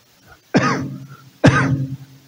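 A man coughing twice, about half a second and a second and a half in.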